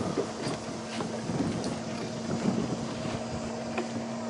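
Small tour boat's engine running with a steady low hum, under wind noise on the microphone.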